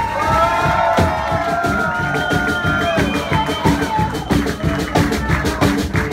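Live band playing a steady groove on drum kit, bass and strings, with a long wavering high note held over the first half, and the audience cheering.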